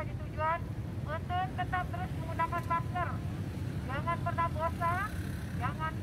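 A woman's raised voice announcing through a handheld megaphone, thin and tinny with the low end cut, pausing briefly midway, over a steady low rumble of passing traffic.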